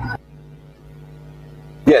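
A steady electrical hum in the pause between voices on the voice-chat audio, with evenly spaced buzzy tones and no change in level. Near the end a man answers "yes" over it.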